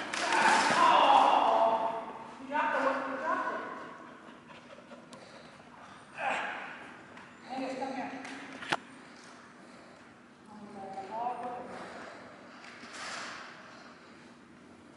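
Indistinct voices in short bursts in a large, echoing room, with one sharp click about nine seconds in.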